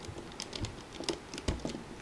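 Light, irregular clicks and taps of a metal loom hook and fingers working rubber bands over the plastic pegs of a Rainbow Loom.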